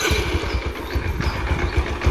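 A 2009 Yamaha Sirius 110 cc four-stroke single is started on its electric starter. It catches at once and runs at idle with steady, even low pulses and a clattery mechanical sound. Viewers liken that sound to a tractor engine.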